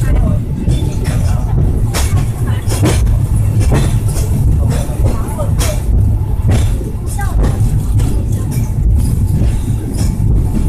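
Peak Tram funicular car running on its rails: a steady low rumble with scattered clicks and knocks from the car. Passengers' voices murmur in the background.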